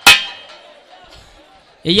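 A metal percussion instrument is struck once, a clang that rings and fades away over about a second. A man's voice comes in, singing or chanting into the microphone, near the end.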